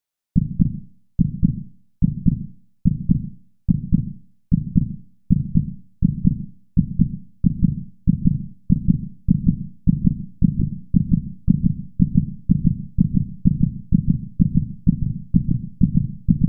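A deep, heartbeat-like pulse in a promo soundtrack, beating steadily and speeding up from a little over one beat a second to about two beats a second.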